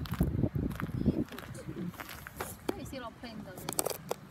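Indistinct voices of people talking, with scattered sharp clicks and knocks.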